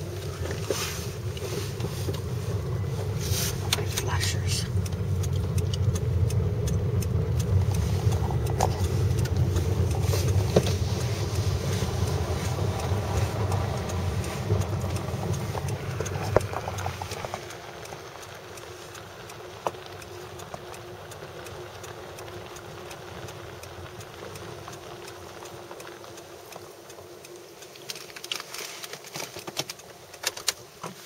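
Car driving, heard from inside the cabin: a steady low engine and road rumble that eases off and drops to a much quieter hum about seventeen seconds in, as the car slows to a stop.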